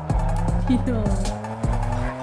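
Music-video soundtrack with a beat, over which a remote-control car's motor revs and its tyres squeal, the pitch sliding up and down several times.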